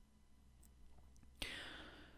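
Near silence with a faint low hum, then a soft breathy hiss in the last half second: a narrator's in-breath.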